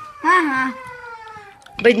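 A child's high-pitched, meow-like exclamation that rises and falls, trailing off into a long, slowly falling drawn-out note, as a reaction to a dice roll in a board game. Talking starts near the end.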